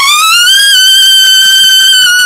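Trumpet scooping up into a very high screech-register note and holding it loud and steady, with a slight sag near the end.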